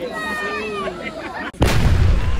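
Explosive demolition charges detonating in a brick mill chimney: one sudden deep boom about a second and a half in, rumbling on as it fades.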